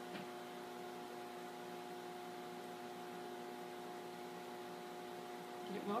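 Faint, steady electrical hum with a light hiss from an Aroma portable countertop cooktop running under a pot of frying oil as it heats.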